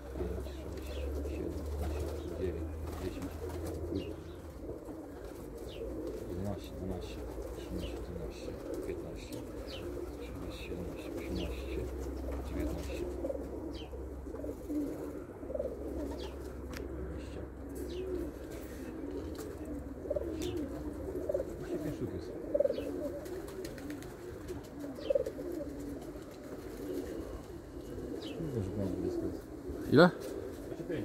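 A flock of domestic pigeons cooing continuously at their loft, with brief wing flaps as birds land and take off.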